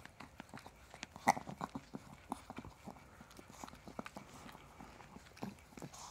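A small dog licking a person's face close to the microphone: a quick, irregular run of wet licks and tongue smacks. The loudest smack comes about a second in.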